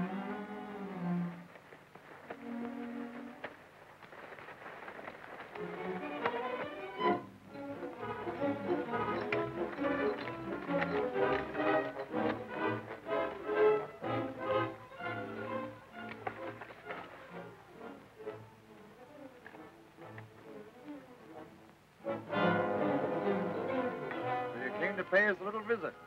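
Orchestral film score led by bowed strings, building up in the middle into a busy, louder passage, then falling back before swelling again near the end.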